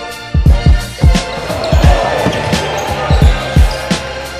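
Hip hop backing music with a heavy, steady kick-drum beat, about two thumps a second, and a brief rising noisy swell in the middle.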